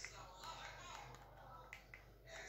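A few faint, sharp clicks of a feature phone's keypad buttons being pressed, two in quick succession near the end.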